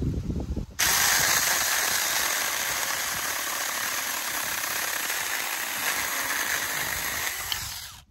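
Saker 4-inch cordless electric mini chainsaw starting suddenly about a second in and running steadily as its chain cuts through a small tree branch, stopping near the end.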